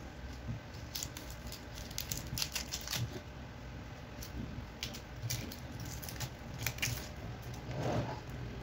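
Dry, papery onion skin crackling as it is peeled off by hand, in scattered irregular crisp crackles.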